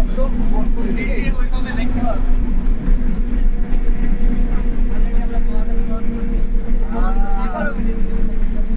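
Steady engine and road drone inside a moving bus, a continuous low hum, with passengers' voices talking in the background, a little louder near the end.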